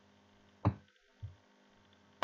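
A single sharp knock about two-thirds of a second in, followed by a fainter low thud about half a second later, over a faint steady hum.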